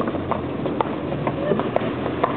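Hackney horse in harness trotting on a paved street, its hooves clip-clopping at about four beats a second over a steady low rumble.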